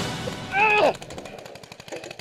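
Paintball marker fire: a fast, even string of sharp pops. A short falling shout comes just before it, about half a second in.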